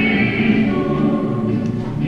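Choir singing slow, held notes, thinning out near the end.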